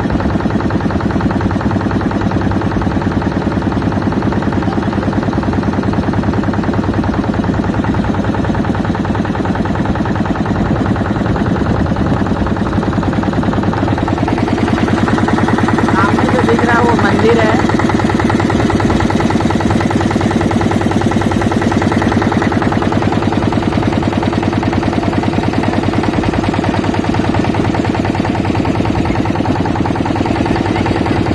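Motorboat engine running steadily under way, a loud, even, rapid chugging. A brief voice calls out about halfway through.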